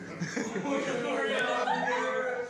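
Voices attempting to sing through mouthfuls of peanut butter, the words garbled and unintelligible, with chuckling from others.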